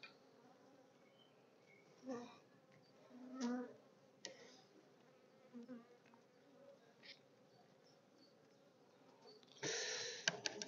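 Faint buzzing of honeybees at an open top bar hive, with a few brief louder buzzes as single bees fly close. Just before the end comes a sudden louder clatter of the wooden top bars being handled.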